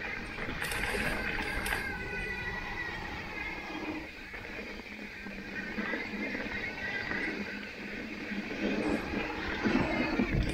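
Mountain bike rolling fast down a loose gravel trail: tyres crunching over stones and the bike rattling over the bumps, with wind rumbling on the microphone. A high whine comes and goes in the first couple of seconds, and there are a few sharper knocks near the end.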